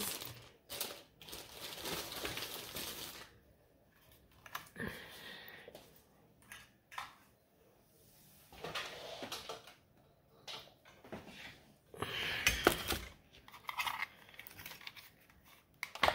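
Intermittent rustling, crinkling and small clicks of craft materials being handled on a worktable, with the loudest burst of rustling about twelve seconds in.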